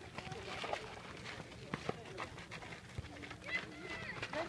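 Voices of several people calling out across an outdoor football pitch, not close to the microphone, with a few short sharp knocks among them.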